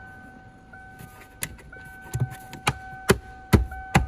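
Plastic fuse-panel cover on the driver's side of a 2013 Kia Sorento's dash being pressed back into its clips: a series of sharp clicks and knocks, about five, the loudest in the second half. A faint steady electronic tone sounds underneath.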